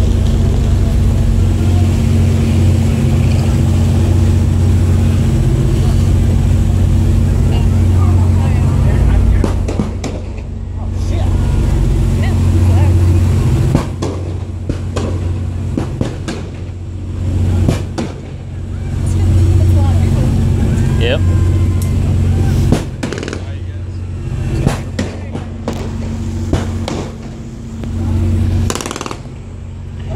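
A boat's engine runs steadily with a low drone while under way. In the second half come scattered short knocks, and faint voices sound in the background.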